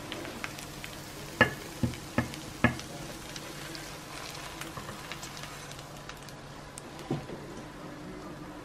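Freshly fried potato rösti sizzling faintly in the hot pan while it is slid out onto a plate with a wooden spatula. Four sharp knocks of the pan and spatula come in quick succession a second or two in, and one more near the end.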